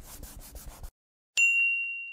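Intro sound effects: rapid scratchy pen-on-paper scribbling strokes that stop about a second in, then a single bright ding that rings on one clear tone and fades away.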